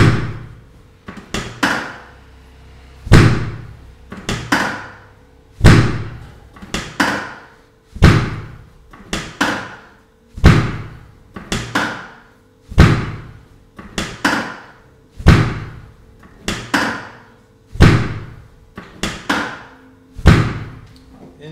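The cocked pelvic drop section of a chiropractic drop table giving way under a hand thrust on the sacroiliac joint: eight sharp thuds about every two and a half seconds, each followed by two or three lighter clicks.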